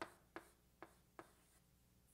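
Faint writing: four short, quick strokes about every 0.4 seconds in the first second or so, then quiet.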